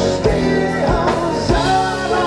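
Live rock band playing: strummed acoustic guitars, electric bass and a drum kit with a steady beat, and a man singing lead.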